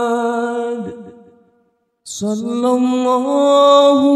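Unaccompanied voice singing a sholawat in long, drawn-out melismatic notes: a held note fades out over the first second and a half, there is a brief silence, then after a short hiss the next long note begins and climbs in small steps.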